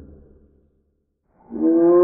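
Sound-designed Hypacrosaurus call built from Paradise shelduck and Ruddy shelduck recordings. One call fades out, and after about a second of silence a new, louder call with a slight upward pitch begins near the end.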